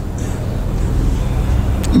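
A low, steady rumble with no speech, growing slightly louder over the two seconds.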